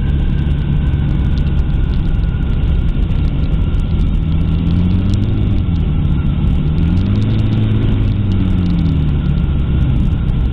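Weight-shift trike's pusher engine and propeller running throttled back on final approach, with wind rushing over the wing-mounted camera. About halfway through, the engine note rises and falls twice.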